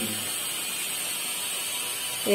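Steady high-pitched whir of a power tool working stone at building work nearby, running without a break.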